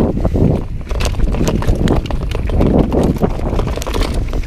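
Mountain bike ridden down a dirt trail, its tyres rumbling over the ground under a dense, irregular run of knocks and rattles from the bike.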